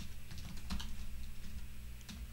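Keystrokes on a computer keyboard: a handful of separate, irregular key clicks as a command is typed, over a faint low steady hum.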